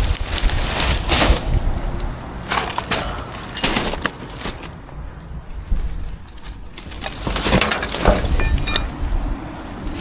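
Plastic rubbish bags rustling and crinkling in bursts as they are pulled and shifted about inside a metal skip, with a few light clinks near the end.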